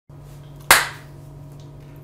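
A single sharp hand clap about two-thirds of a second in, dying away quickly, over a steady low hum.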